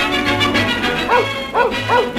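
A dog barks three times in quick succession in the second half, over lively orchestral music.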